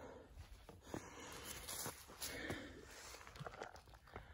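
Faint footsteps rustling and scuffing through dry fallen leaves, with a few soft, scattered clicks.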